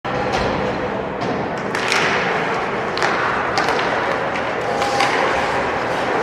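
Ice hockey play: several sharp clacks of sticks and puck against a steady scraping hiss of skates on ice and arena crowd noise.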